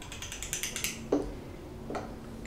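A fast run of small clicks, about ten a second, for most of the first second, then two single knocks, as the EarthPulse magnet and its cross-polarity ring are handled and set down on the table. A faint steady hum runs underneath.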